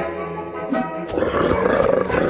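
A growling monster roar, swelling from about a second in, over background music.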